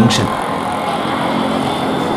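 Steady road-traffic noise from cars and auto-rickshaws passing on a busy city road.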